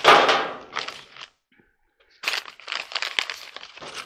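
A plastic parts bag and paper instruction sheets rustling and crinkling as they are handled, in two stretches with a short pause between.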